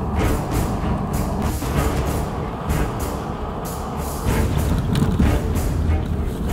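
Car driving on a paved road, heard from inside the cabin as a steady low road-and-engine rumble, under background music with a regular beat.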